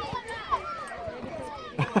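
Several high voices calling out over one another on an open football pitch, with a short sharp knock about half a second in and a louder one near the end.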